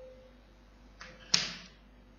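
A piece of chalk tapping against a chalkboard: a faint click about a second in, then one sharp tap a moment later as the chalk meets the board to start drawing.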